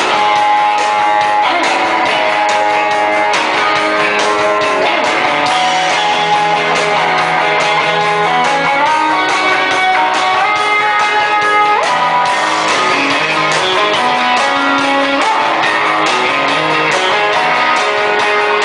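Rock band playing live in an instrumental passage, with electric guitar to the fore playing a lead line whose notes bend in pitch over drums and bass. There are no vocals.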